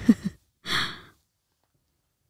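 A woman says a short "oh", then lets out a breathy sigh about two-thirds of a second in.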